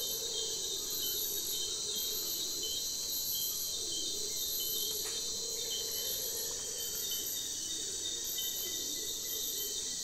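Steady chorus of Amazon rainforest insects, crickets among them: a high, even buzz with a still higher trill that comes and goes over it.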